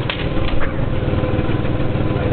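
Go-kart engine running steadily at close range, with two short knocks about a tenth of a second and half a second in.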